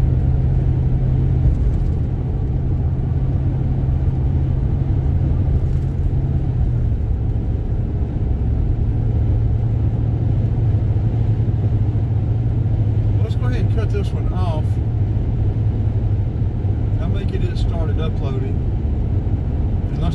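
Steady road noise inside a moving car's cabin: a low engine and tyre drone at cruising speed, its pitch shifting slightly about a third of the way through.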